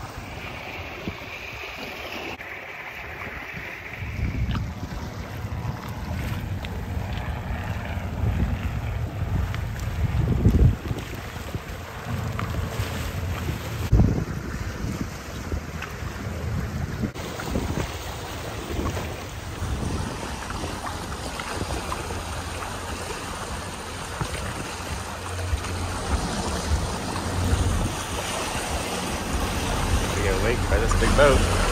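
Wind buffeting the microphone over the rush and splash of water along a Hobie 16 catamaran's hulls under sail; the buffeting grows heavier about four seconds in. A few heavier thumps stand out, the loudest about ten and fourteen seconds in.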